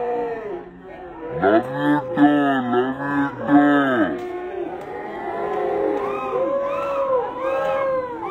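A packed cinema audience shouting together in long calls that rise and fall, many voices at once. The calls are loudest between about one and a half and four seconds in, then come lighter and higher, about twice a second, near the end.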